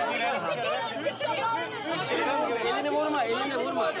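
Several people talking over each other in agitated, overlapping chatter.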